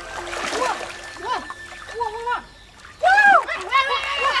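Water splashing as two boys wade and work their hands in a shallow stream, with short calls from a voice that rise and fall in pitch; the loudest call comes about three seconds in.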